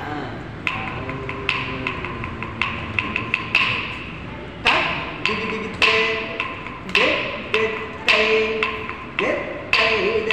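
Recorded Carnatic dance accompaniment: sharp percussion strokes, a few a second, each with a short ringing tail, under a voice reciting or singing in rhythm.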